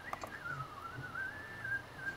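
A person whistling a single wavering tune: the pitch dips, rises again and holds, then warbles briefly near the end.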